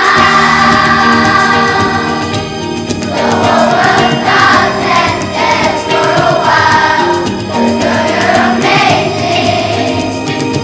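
Elementary children's choir singing with instrumental accompaniment. A chord is held for about the first three seconds, then the voices move into a faster melody over a steady bass line.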